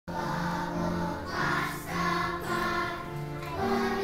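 Children's choir singing together, a melody of held notes that change pitch about every half second to second.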